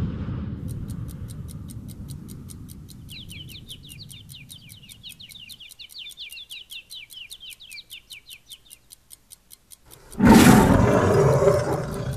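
Soundtrack outro: a big closing hit fades away, then a steady ticking at about five ticks a second, with quick chirps layered over the middle. A loud burst of sound comes near the end.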